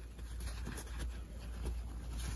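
Faint rustling and brushing of cotton fabric as it is folded and handled by hand, with small scratchy touches.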